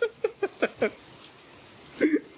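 A man laughing in a quick run of short bursts for about the first second, then only a faint steady hiss.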